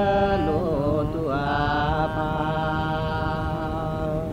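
A single voice singing slowly in a chant-like style: a wavering, sliding phrase over the first second or so, then one long held note until near the end.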